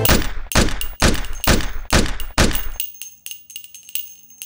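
A rapid string of gunshots: six loud, sharp reports about two a second, each with a short echoing tail. After them come fainter, irregular clicks and a faint high ringing.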